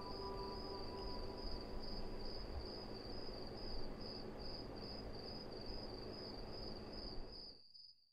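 Insect chirping: one high tone pulsed evenly about three times a second over a low hiss. It cuts off just before the end.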